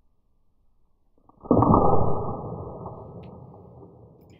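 Victor wooden snap mousetrap springing shut on a wooden ruler, heard slowed down: a sudden deep bang about a second and a half in that dies away slowly over the next two seconds.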